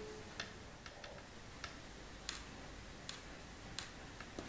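Faint, scattered light clicks and taps, about one every half second to second, from the organ's wooden bellows, reservoir and relief-valve trip wire being worked by hand.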